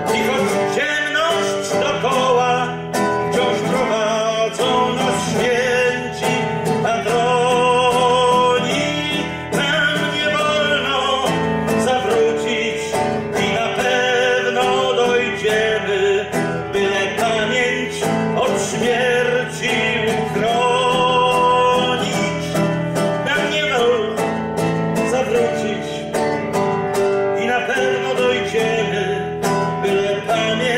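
A man singing to his own strummed nylon-string classical guitar, the voice held in long notes with vibrato over steady chords.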